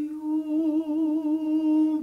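One male voice of an a cappella klapa singing a single long, held note with a gentle vibrato, starting abruptly out of a brief silence.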